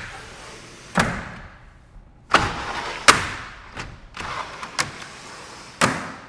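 Vinyl glazed panels of a PGT EzeBreeze four-track porch window being slid down their aluminum tracks, with a rattling slide and a series of sharp knocks as the panels drop and stop at the bottom.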